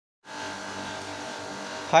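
Steady low machinery hum with an even, unchanging tone, starting a moment in; a man's voice says "Hi" at the very end.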